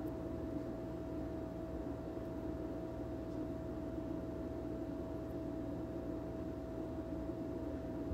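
Steady background hum of a shop interior, with a faint constant high tone and no distinct events.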